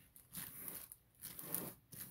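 Clear plastic bag wrapped around a handbag crinkling as it is handled, in two short rustles about a second apart.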